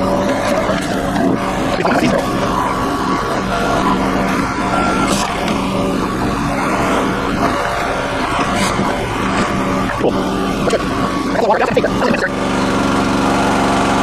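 Red Rock mini towable backhoe's small gas engine running steadily while it drives the hydraulics that work the boom and bucket through wet, rocky mud. The engine note changes about twelve seconds in.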